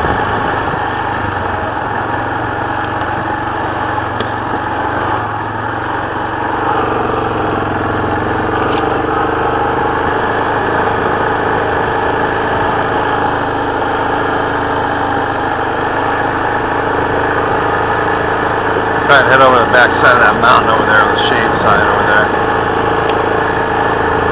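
2018 Yamaha Kodiak 450 ATV's single-cylinder engine running steadily as the quad cruises along a desert dirt track, kept at a quiet, easy throttle. Its note shifts slightly about seven seconds in.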